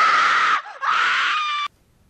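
A girl screaming: one long high scream, a brief break about half a second in, then a second scream that cuts off suddenly near the end.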